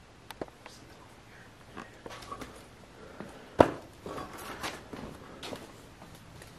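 Scattered footsteps and rustling on a debris-covered floor, with several small knocks and one sharp knock about three and a half seconds in, the loudest sound.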